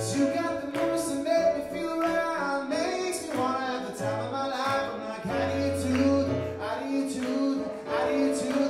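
Live song: a man singing over an electric stage keyboard, with sustained chords, held bass notes and a regular rhythmic attack.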